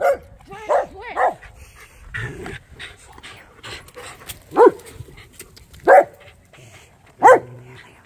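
A dog barking: six short barks, three in quick succession in the first second and a half, then three more spread about a second and a half apart after a pause.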